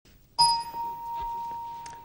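A single electronic game-show chime sounds about half a second in: one clear tone that rings on and slowly fades.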